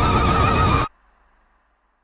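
Loud movie-trailer sound: a high, wavering held cry over a heavy low rumble, cut off abruptly just under a second in, then dead silence.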